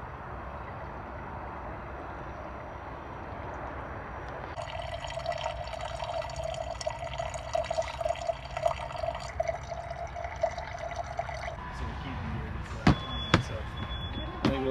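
Water pouring in a steady stream from the spigot of a plastic water jerrycan into a container, starting about four seconds in and stopping a few seconds before the end. Two sharp knocks follow near the end.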